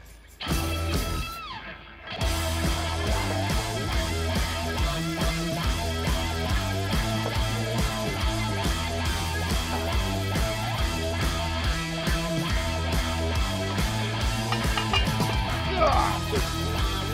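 Background rock music with guitar, with a steady beat. After a brief quieter stretch it comes in at full level about two seconds in.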